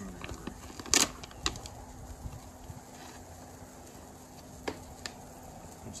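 Plastic clamshell produce container being snapped open and handled: a sharp plastic snap about a second in, a smaller click just after, and another click near the end, over a faint steady hum.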